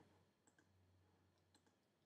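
Near silence: room tone with two faint clicks, about half a second and a second and a half in.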